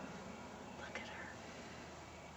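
A brief, faint whisper about a second in, over a steady background hiss.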